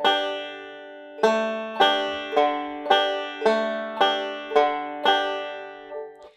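Five-string banjo played fingerstyle in a D-chord backup pinch pattern: a single note on the third string, a pinch, then the fourth string and a pinch, repeated. There is one note, a pause of about a second, then evenly plucked notes about two a second that ring out near the end.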